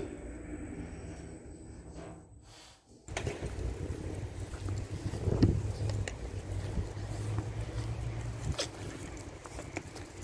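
Outdoor background noise: a low steady hum under wind rumbling on the microphone. It is quiet for the first three seconds, then opens up suddenly and stays fuller, with a few faint clicks.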